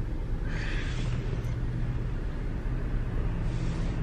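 Steady low hum of a Jeep's engine idling, heard from inside the cabin, with a brief soft hiss about half a second in.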